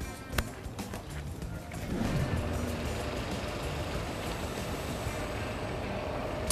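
Street traffic noise, with a city bus's engine running close by, growing louder about two seconds in and then holding steady. Background music plays underneath.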